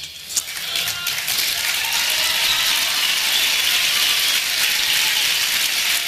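Audience applauding, swelling over the first second and then steady.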